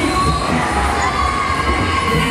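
Riders screaming and shouting on a swinging fairground thrill ride, over loud ride music with a steady bass beat.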